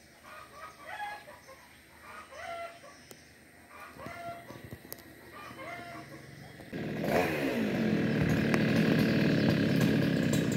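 Chickens clucking and crowing faintly for the first several seconds. About seven seconds in, a small two-stroke chainsaw starts up suddenly and keeps running loudly, its pitch rising and falling as it revs.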